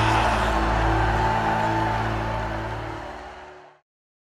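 Background music with long held notes, fading out over the last two seconds into silence.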